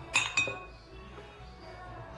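Glass beer mugs clinking together in a toast: two quick, ringing clinks about a quarter of a second apart, just after the start.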